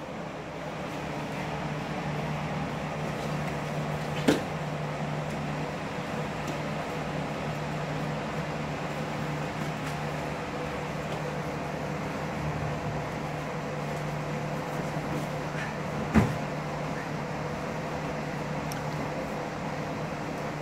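Steady hum and whir of a floor fan with a constant low tone. Two dull thumps, one about four seconds in and one near sixteen seconds, come from the grapplers' bodies and feet against the padded mats and wall.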